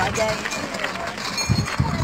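Voices outdoors. About one and a half seconds in come a few dull thumps of steps on a dirt and gravel track.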